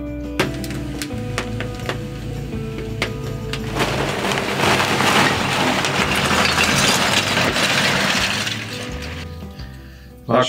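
Background music over a few sharp cracks, then several seconds of loud paper rustling and crumpling in the middle as brown paper is pushed into a wood fire to get it going.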